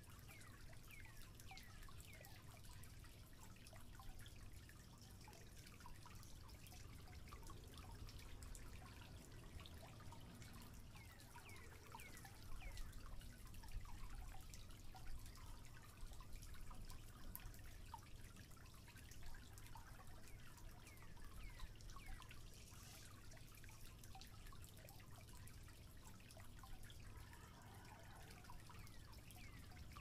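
Faint crackling of a small wood campfire: scattered small pops and ticks over a quiet hiss.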